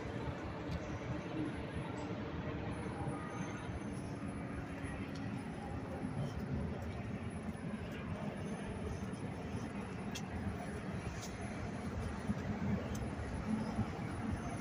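Steady street traffic noise, a low rumble of vehicles with faint voices in it.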